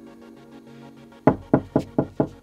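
Quick knocking on a wooden door, a run of sharp knocks about four a second starting just over a second in, over faint background music.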